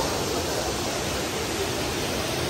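Waterfall pouring into a pool, a steady rushing noise.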